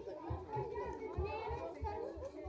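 Several indistinct voices talking and calling out at once, overlapping with each other.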